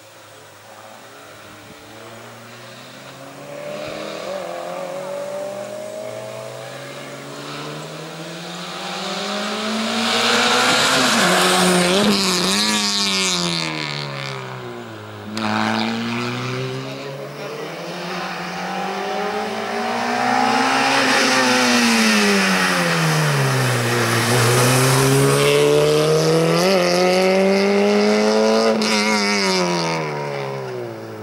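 Small hatchback race car's engine revving hard through a cone slalom. The revs climb and drop several times as it accelerates and slows, faint at first and loud from about ten seconds in.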